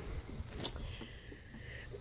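Quiet room with a single sharp click about half a second in, from the camera being handled.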